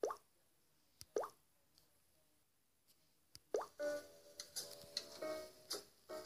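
Three short gliding blips, the first at the start, one about a second in and the last about three and a half seconds in, followed by light music with clear tuned keyboard-like notes from about four seconds in.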